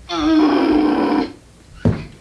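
A young woman's voice giving one loud, held cry of effort lasting just over a second as she kicks up into a handstand, followed near the end by a single thud of her landing on the carpeted floor.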